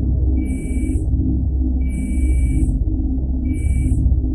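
Title-sequence soundtrack music: a low, dark drone whose pitch slowly sways up and down. Over it come three bursts of an electronic beeping text-typing effect, each a steady high tone with hiss above it and lasting under a second.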